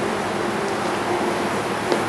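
Steady hum and hiss of a refrigerated wine cellar's cooling and air-handling system, with faint steady tones in it. A single short click comes near the end.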